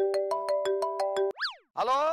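Comedy sound effect: a short electronic, toy-like tune of stepped notes over fast even ticks, about seven a second, ending in a quick whistle that shoots up and falls away like a boing. A man starts speaking just before the end.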